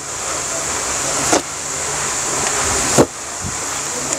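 A steady rushing noise that slowly grows louder, with a low hum under it and two short knocks, one about a second and a half in and a sharper one about three seconds in.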